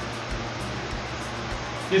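Steady low hum and hiss of a fan running in a small, stuffy room, unchanging throughout.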